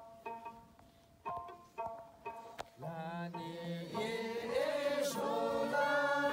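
A small plucked lute plays a few short, separate notes, then about three seconds in a group of voices starts singing together over it, getting louder about a second later.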